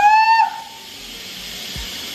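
Kitchen sink sprayer running steadily, water spraying onto hair. At the very start a loud, short, high-pitched tone glides up and holds for about half a second.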